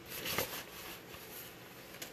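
Soft rustling of a silk scarf and paper as the scarf is drawn out of a paper envelope, with a brief louder rustle about half a second in, then faint handling.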